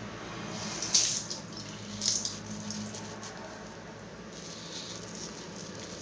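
Tap water running into a bathroom sink, a steady hiss with two short louder moments about one and two seconds in.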